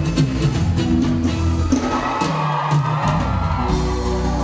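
Live band playing upbeat Brazilian calypso pop, with drum kit, bass and electric guitar, and crowd noise underneath. About two seconds in the bass drops out for a moment, then the full band comes back in.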